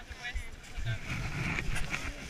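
Indistinct voices of people close by, over low wind rumble and brief rustling handling noise.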